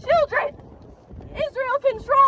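A woman's voice amplified through a handheld megaphone, speaking in short phrases with a pause of about a second near the middle.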